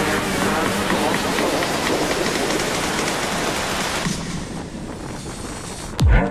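Steady rush of wind and road noise from a moving motorcycle, easing off somewhat in the last second or two.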